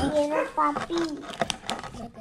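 A person's voice, with a few sharp clicks near the end as a rubber balloon is stretched and fitted over a glass bottle's neck.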